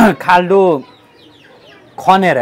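A man's voice for the first moment, then faint, short high chirps of small birds in the background.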